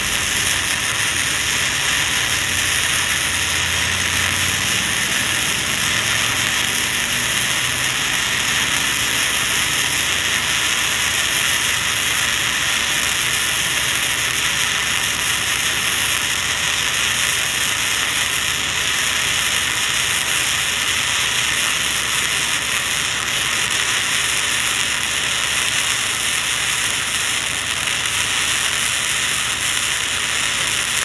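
Flux-core wire-feed arc welding on rusty, uncleaned steel with a Titanium Easy Flux 125 welder: the arc crackles and sizzles steadily and unbroken.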